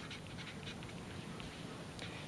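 Crayola felt-tip marker writing on paper: faint, quick, irregular strokes of the tip as a word is lettered.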